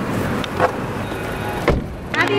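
A car door shutting with a single thump near the end, after a few light clicks over steady background noise.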